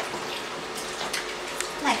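Light splashing of shallow water in a baby's plastic bath pod, a few small separate splashes and drips.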